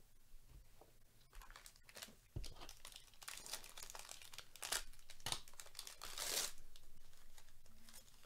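A foil trading-card pack wrapper being torn open and crinkled by hand: scattered crackles that build into dense crinkling, loudest about six seconds in.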